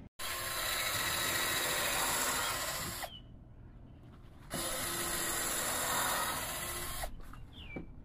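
Cordless drill running in two bursts of about three seconds each, with a short pause between, winding down as the trigger is let go.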